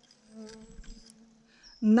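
A flying insect buzzing close to the microphone: a faint, steady hum that swells about half a second in and fades away over the next second.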